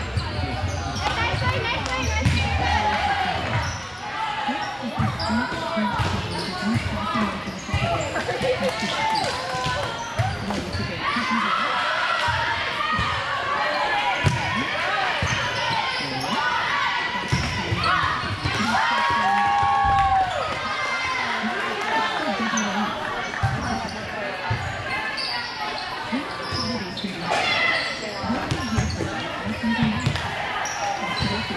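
Volleyballs being hit and thudding on the court floor, repeated irregularly, mixed with players' shouts and calls, echoing in a large sports hall.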